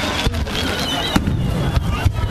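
Aerial fireworks shells bursting, with a sharp bang about a second in.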